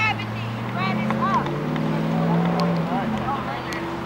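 An engine droning steadily, its low pitch drifting slowly up and then down, with distant voices calling over it.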